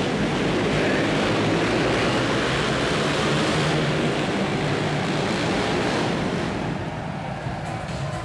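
Several ice speedway motorcycle engines running hard as the bikes race round the rink, a dense steady noise that eases off about three-quarters of the way through.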